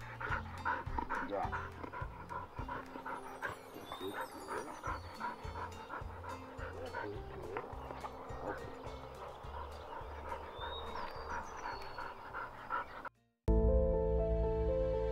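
A dog panting steadily, about three breaths a second, over soft background music. Near the end the sound cuts out briefly, and the music comes back louder.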